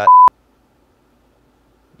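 One short, loud, steady electronic beep lasting about a quarter of a second, ending in a click and followed by near silence: an edit bleep added in post-production at a blooper cut.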